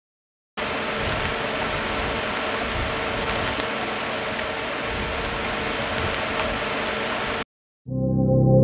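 Vinyl-and-tape noise atmosphere loop: a steady crackling hiss much like rain, starting about half a second in and cutting off sharply near the end.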